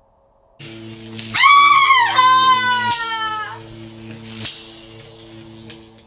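A woman's long, loud, high scream that rises and then slowly sinks, over a dark, sustained music drone that comes in just under a second in. A few sharp hits punctuate it. This is a scene-change sting in the drama, leading into a torture scene.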